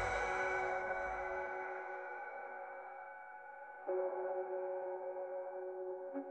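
Deep house music in a breakdown without drums: sustained synth chords ring and slowly fade, and a new chord comes in about four seconds in.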